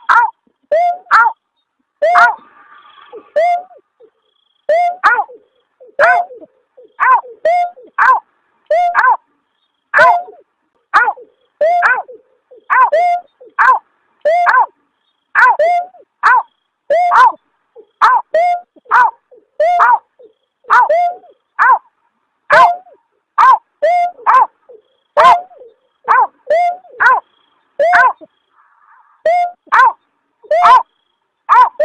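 Recorded call of the bird that trappers call berkik (also beker or punguk): short hooked "aw, aw" notes, often paired, repeated about one to two times a second without a break. This is a lure recording, edited to sound close to the wild bird.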